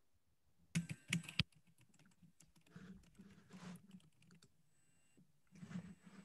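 Keyboard typing heard through a video-call microphone: three sharp clicks about a second in, then fainter scattered taps and rustles.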